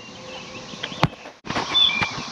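Outdoor ambience with a single sharp click about a second in. The sound drops out briefly, then a few short, high bird chirps follow near the end.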